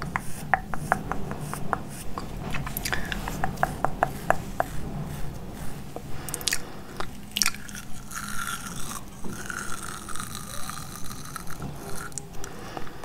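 Close-miked mouth sounds and a spoolie brush handled right at the microphone: quick, sharp wet clicks and crackles, coming thick and fast in the first few seconds, then sparser.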